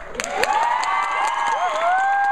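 Audience breaking into cheers, whoops and clapping a fraction of a second in, at the end of a dance performance, many voices overlapping and growing louder.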